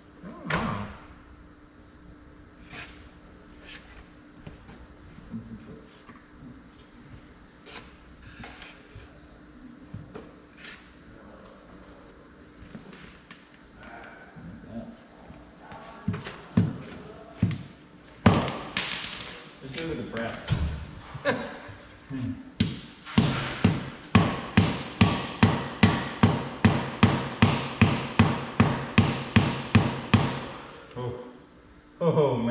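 Scattered knocks and taps on metal, then a few louder single blows, and from about three-quarters of the way in a fast, even run of hammer blows, about three or four a second, on a socket set over a hydraulic swivel's centre post to drive it down into its housing.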